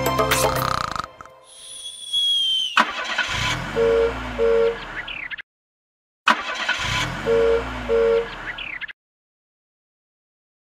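Cartoon car sound effect played twice: an engine hum that rises and falls, with two short horn beeps in each pass. It follows the end of a children's song about a second in and stops well before the end.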